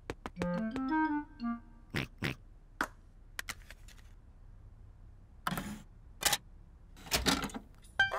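A short tune of quick notes, then cartoon sound effects of a game disc going into a computer's disc drive: a few sharp clicks followed by short whirring bursts.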